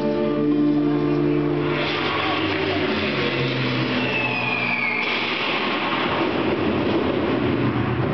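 Figure-skating program music over the arena speakers: held keyboard chords fade about two seconds in into a noisy, rushing passage with a short falling whine near the middle. The passage stops abruptly at the end as the music changes.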